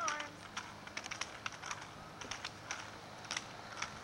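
Children's plastic roller skates rolling on a concrete driveway, their wheels clattering in irregular clicks several times a second.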